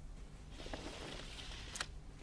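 Heavy fabric curtains drawn open by hand: a soft swish of cloth sliding along the rail, ending in a sharp click near the end.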